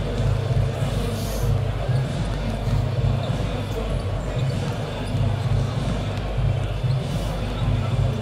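Basketball arena ambience heard from high in the stands: music over the public-address system with a low bass beat about once a second, under a continuous background of crowd noise in a big, echoing hall.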